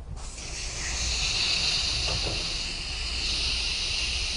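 Compressed air hissing steadily from an air blow gun, starting just after the start, as it drives a foam line-cleaner plug through the emptied coax cable sheath to clear out the leftover fluid.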